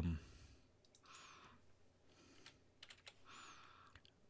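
Faint computer keyboard typing and mouse clicks, scattered and irregular, with two soft half-second hisses, one about a second in and one near the end.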